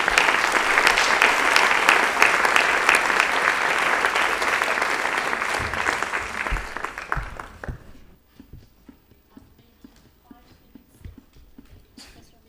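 Audience applauding in a lecture hall, dense and steady for about seven seconds, then fading out. Only a few faint knocks and rustles follow.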